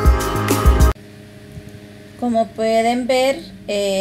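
Background music with a drum beat that cuts off suddenly about a second in, leaving a low steady hum; a woman then starts speaking.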